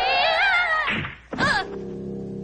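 A cartoon girl's long, wavering scream as she falls, rising and then dropping in pitch, then a thud with a short cry about a second and a half in, followed by a steady low music drone.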